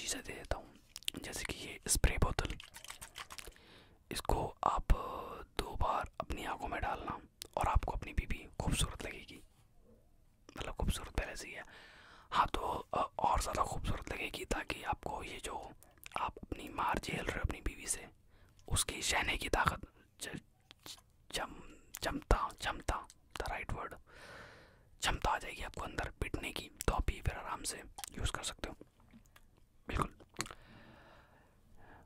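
A man whispering close to the microphone, in phrases broken by short pauses, with small sharp clicks between them.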